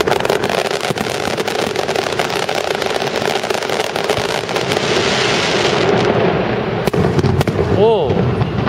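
Aerial fireworks shells bursting overhead in quick succession, a dense run of sharp pops and bangs.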